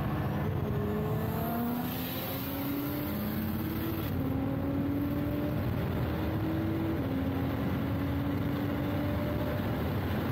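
Nissan GT-R's twin-turbo V6, heard from inside the cabin, pulling hard under full acceleration. The engine pitch climbs steadily and drops sharply at three quick upshifts of the dual-clutch gearbox, about two, four and seven seconds in.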